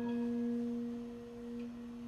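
Bronze gamelan instruments ringing out after being struck: a low steady tone with a fainter higher tone above it, slowly swelling and dipping in loudness.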